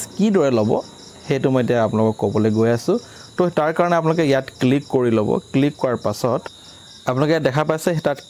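A man talking in short phrases with brief pauses, over a faint, steady high-pitched whine.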